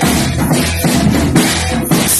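A Yamaha drum kit being played, with bass drum and cymbal strikes following each other closely in a steady beat.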